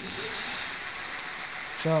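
A steady hiss lasting nearly two seconds, with most of its energy high up, fading just before a man says a word.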